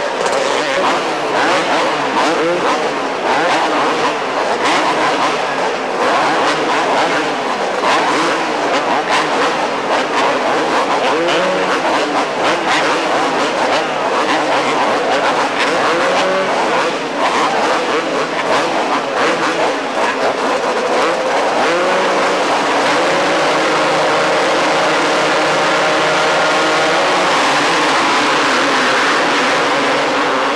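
A gate full of two-stroke supercross motorcycles revving at the start line, engines blipping up and down over one another. About three-quarters of the way through, the sound turns into a steadier, denser roar of the whole pack accelerating off the line together.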